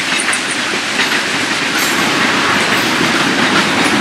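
Freight train rolling past close by: a steady rumble of railcars with wheels clicking over the rail joints.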